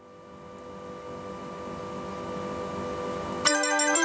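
Dutch street organ (draaiorgel) with a held chord of pipes swelling up from nothing over a low rumble. About three and a half seconds in, the tune starts loudly with quick notes.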